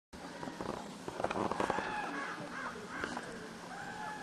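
Birds calling outdoors: a run of short, arching calls repeated throughout, with a few sharp clicks a little over a second in.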